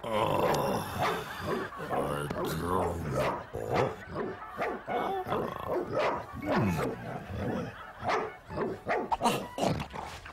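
A cartoon dog barking over and over, a longer pitched sound in the first few seconds giving way to quick runs of short barks.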